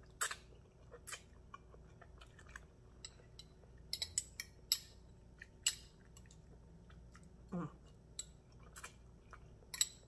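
Close-up mouth sounds of a person eating spicy instant noodles: a slurp at the start, then chewing with many short, sharp wet clicks and smacks, and one short falling sound a little past halfway.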